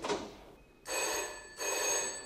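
Landline telephone ringing: two rings in quick succession, starting about a second in. A short knock comes at the very start.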